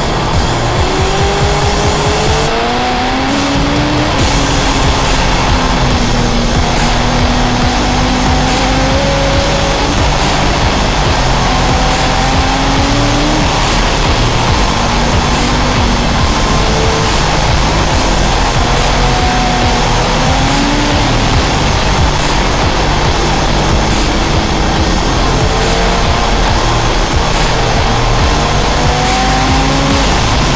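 Motorcycle engine running while riding, its pitch rising and falling with the throttle, under wind rush and loud rock music.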